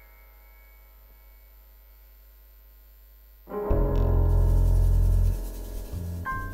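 A keyboard chord in a piano voice is left ringing and fades away. About three and a half seconds in, the band comes in loudly together: a deep sustained bass note under a keyboard chord, with a cymbal-like hiss on top.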